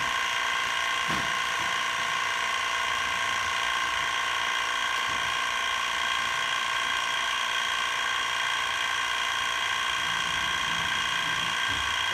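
TRS21 active recovery pump running steadily with a constant mechanical whine, pulling the solvent vapour back out of the extraction system into the recovery tank.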